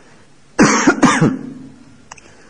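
A man coughs and clears his throat: one loud, sudden burst about half a second in, lasting under a second and fading out.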